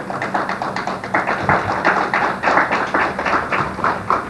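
A rapid, irregular run of sharp taps, several a second, loudest in the middle.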